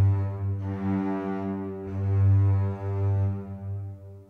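Sampled chamber strings playing back: cellos and double basses holding long, low legato notes in a slow line, swelling about two seconds in and fading near the end.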